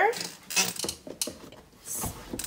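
Small cardboard drawer of an advent calendar being handled and pushed back into its slot: a few light scrapes and knocks of cardboard on cardboard. The drawer is a stiff fit, a little hard to push in.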